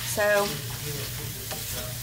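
Edamame pods and garlic sizzling in oil in a nonstick skillet, stirred and tossed with a spatula that scrapes and rustles through the pods. A short pitched hum shortly after the start is the loudest moment.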